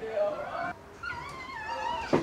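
A toddler's high-pitched vocalizing: short babbling sounds at first, then a longer squeal whose pitch wavers in the second half.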